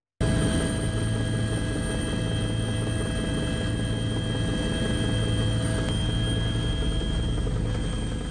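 Helicopter engine and rotor noise heard from aboard the aircraft: a steady drone with a constant low hum and a high whine, starting abruptly.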